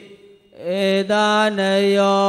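A Buddhist monk's voice chanting Pali on a steady, held pitch, breaking off briefly at the start and coming back in about half a second in.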